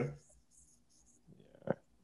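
A man's voice trails off at the start, then a pause of near silence broken by one short, soft sound near the end.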